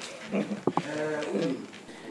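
A person's voice making a drawn-out, wavering sound, with two sharp clicks about two-thirds of a second in.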